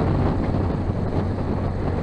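Wind buffeting the microphone on a yacht under way, over a steady low hum from the moving boat.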